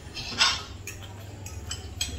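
A metal spoon scraping and clinking against a small bowl while eating: one louder scrape about half a second in, then a few light clicks.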